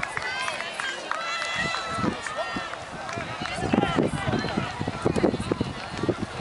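Indistinct voices of players and spectators calling out and talking, several overlapping, with no clear words.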